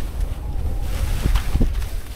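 Wind noise buffeting the camera microphone as skis slide downhill over snow. The hiss of the skis grows louder in the second half.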